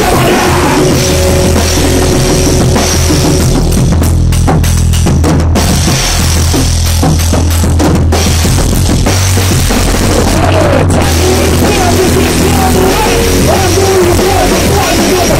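A rock band playing loud and live: a drum kit with bass drum and cymbals pounding under an electric guitar.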